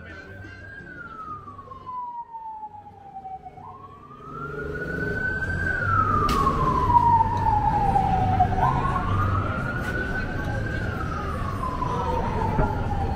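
Emergency vehicle siren wailing, its pitch rising for about two seconds and falling for about three, cycle after cycle. Street noise underneath grows louder about four seconds in.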